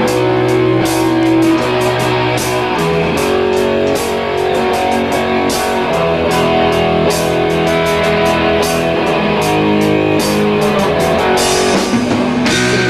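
Rock band playing: strummed electric guitar chords over drums, with regular cymbal hits, all at a steady loud level.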